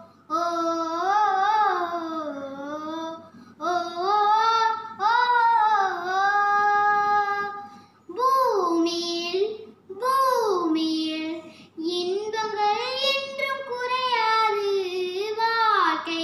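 A young girl singing unaccompanied, in long held notes with wavering, ornamented pitch. The phrases break briefly for breath every few seconds.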